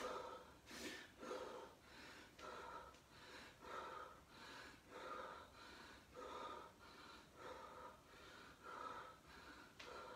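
A man breathing hard and fast in a steady rhythm of short breaths, about two a second, while exercising flat on the floor; the sound is faint.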